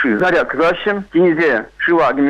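A man speaking in continuous talk.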